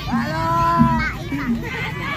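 A single drawn-out, voice-like call lasting about a second, starting just after the start and fading out near the middle, over steady crowd noise from a street procession.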